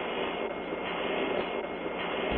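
Steady hiss of an open radio communications loop between transmissions, even and unchanging, with no voice on the line.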